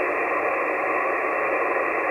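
Steady hiss from a 2-meter SSB transceiver's speaker, confined to the narrow voice passband: receiver noise with no station talking.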